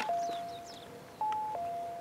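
Video intercom door station sounding its electronic two-tone chime, a short higher tone falling to a longer lower one, played twice about a second and a half apart: the visitor call ringing inside the house after the button is pressed.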